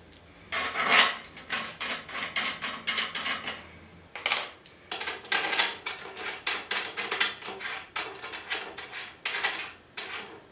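Steel M5 screws, nuts and washers clinking against aluminum as they are handled and set into the slots of aluminum linear rails on a T-slot extrusion table. A quick, uneven run of small metallic clicks and rattles, with a short lull about four seconds in.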